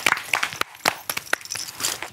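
A small group clapping their hands: dense claps in the first half second that thin out to a few scattered ones and stop.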